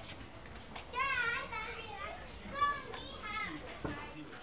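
High-pitched voices calling out in two short bursts, about a second in and again near three seconds, with a short thump just before the end.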